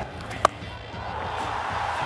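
A cricket bat striking the ball hard: one sharp, ringing crack about half a second in, over steady stadium background noise.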